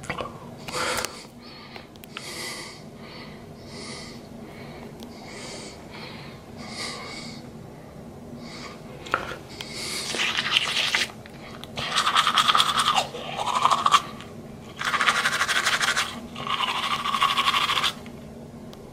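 Manual toothbrush scrubbing back and forth across teeth in a foam-filled mouth: soft separate strokes at first, then loud, fast scrubbing in bursts of one to two seconds from about halfway in.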